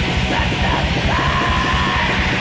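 Raw black metal recording: fast, dense drumming and distorted guitar under a harsh screamed vocal, with a held high note about halfway through.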